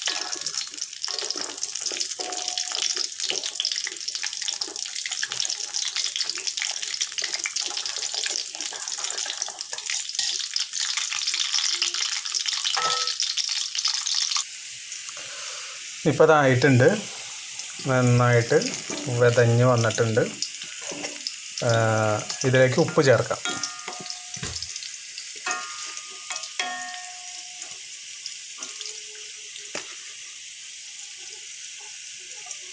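Whole Indian gooseberries sizzling and crackling in hot oil in an aluminium pan as they are turned with a wooden spatula. The sizzle drops off sharply about halfway through and stays faint after that, with a man's voice speaking in short bursts in the middle.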